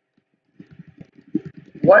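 Computer keyboard typing: a quick, irregular run of key clicks starting about half a second in.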